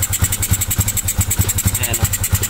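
SYM 125 cc single-cylinder motorcycle engine, fitted with a Raider 150 intake manifold and a 28 mm carburettor, idling with steady, even exhaust beats.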